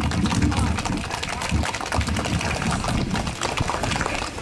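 A steady low rumble with faint, indistinct voices underneath.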